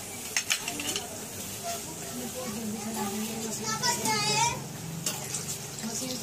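Hand mixing a soft potato and cornflour dough in a plastic bowl, with soft squishing and scraping and a few light knocks. A voice is heard in the background, rising and falling about four seconds in.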